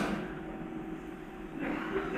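A pause in speech in an auditorium: the voice fades out in the hall's echo, leaving a low background with a faint steady hum, and a faint rise in noise near the end.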